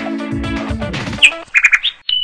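Background music with guitar and held bass notes that stops about a second in. A short rising chirp and a quick run of three or four high electronic blips follow: sound effects for a subscribe-button animation.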